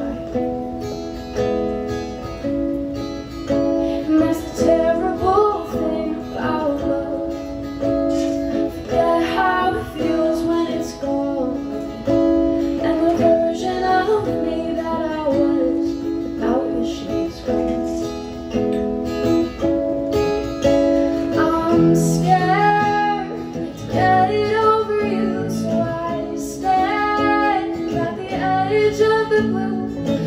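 A woman singing a song while strumming an acoustic guitar, performed live.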